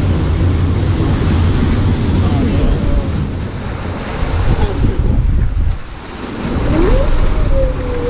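Rushing white water around a circular river raft on a rapids ride, a loud steady wash with wind on the microphone that dips briefly about six seconds in. Near the end a long call rises and then slowly falls in pitch.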